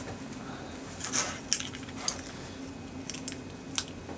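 A handful of light, sharp metallic clicks and clinks, spaced irregularly and the loudest near the end, over a steady low hum.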